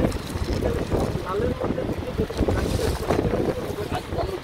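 Close rustling and crackling of beaded, embroidered fabric and plastic bags being rummaged through by hand, over a steady low rumble of handling noise on the microphone.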